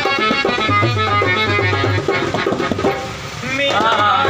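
Harmonium playing a sustained melody over a low, steady hand-drum beat. Near the end a voice comes in, sliding up and down in pitch.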